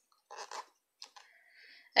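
Faint rubbing and scratching of a metal crochet hook drawing yarn through single-crochet stitches: a short soft rustle about half a second in, a small tick, then a thin scratchy rub near the end.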